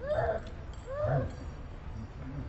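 Baby macaque crying: two short, high, wavering whimper calls about a second apart.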